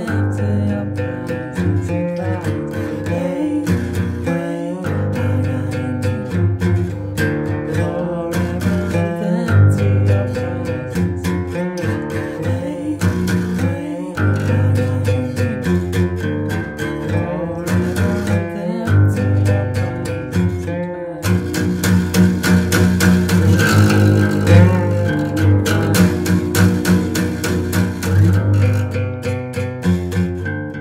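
Steel-string acoustic guitar strummed in a steady rhythm, with a man singing over it. The strumming and voice grow louder about two-thirds of the way in.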